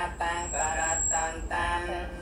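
A male monk's voice chanting text from a book in a sing-song recitation, with held, wavering notes and short breaks between phrases.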